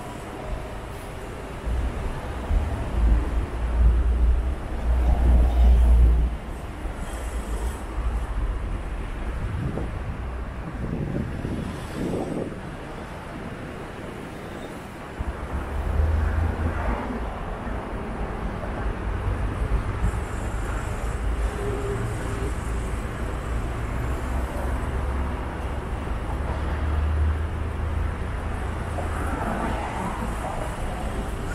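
Road traffic, cars and buses passing close by on a busy city street, with wind buffeting the microphone in heavy low rumbles, strongest a couple of seconds in and again over the second half.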